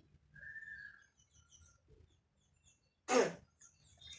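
A single short cough about three seconds in, after a brief high whistle-like tone near the start.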